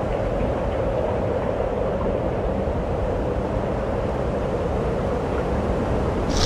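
Cross-country skis sliding over a snow track while the skier is towed along by dogs, a steady rushing, rasping noise at an even level.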